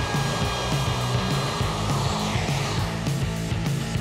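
Handheld router with a quarter-inch round-over bit running steadily while it cuts along the underside edges of a plywood top, over background music with a repeating bass line.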